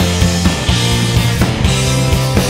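Rock band playing live in an instrumental passage with no singing: electric guitar over a steady drum kit beat.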